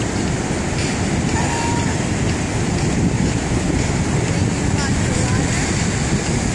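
Steady wind rumbling on the phone's microphone over the rush of ocean surf.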